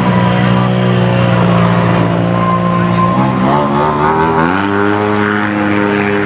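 Side-by-side UTV engines running as the machines creep past, a steady drone that climbs in pitch over about a second, beginning a little past the three-second mark, as one speeds up, then holds.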